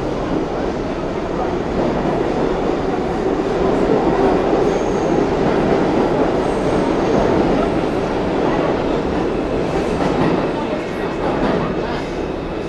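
New York City subway train running through the station, its wheels rumbling and clattering on the rails, growing louder toward the middle and easing off near the end.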